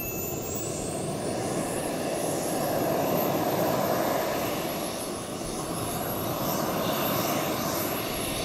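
Model jet turbine engine in an HSD Jets T-45 Goshawk, running at low taxi power. A steady rushing exhaust sits under a thin, very high whine that climbs in pitch over the first couple of seconds and then holds.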